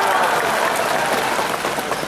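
A large crowd applauding, a dense steady clapping that runs on until the speaker resumes.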